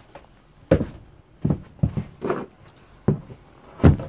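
About seven short, irregular knocks and clunks of objects being handled and set down at close range.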